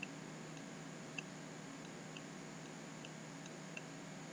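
Faint computer mouse clicks, about eight at uneven intervals, over a low steady room hum.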